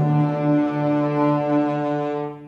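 Alto saxophone and orchestra holding one long, steady chord.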